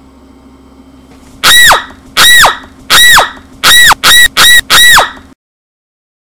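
A squeaky honk sound effect, repeated seven times. Each honk drops steeply in pitch, is very loud and overdriven, and the last four come quicker; it cuts off abruptly near the end.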